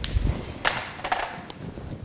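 A dull thump, then a few short scuffs and small clicks: handling and movement noise from someone shifting position and reaching to a whiteboard.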